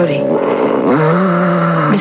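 A woman's long, held moan from about halfway in, rising in and dropping away at the end: the medium going into a trance during a séance. A steady high tone runs underneath.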